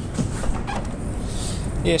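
Boot lid of an Alfa Romeo 159 sedan being unlatched and lifted open, with a short click about half a second in, over a steady low rumble.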